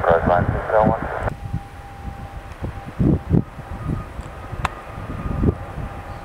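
A brief air traffic control radio transmission over a scanner, cut off abruptly after about a second. Then the low, uneven rumble of an ATR turboprop airliner on its landing roll, with wind buffeting the microphone.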